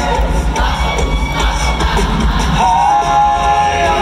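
Five-man a cappella vocal group singing live, a deep bass voice carrying the low line throughout, with the audience cheering and shouting over it. Near the end the upper voices hold a sustained chord.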